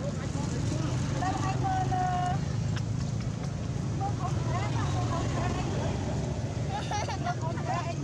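A steady low drone of a running motor, with people's voices talking in the background.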